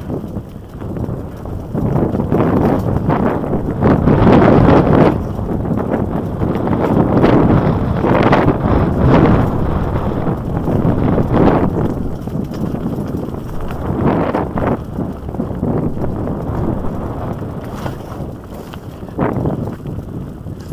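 Mountain bike riding fast over rocky singletrack: wind rushing over the handlebar camera's microphone, with the bike rattling and knocking irregularly over stones and bumps. The noise surges loudest a few seconds in and again around the middle.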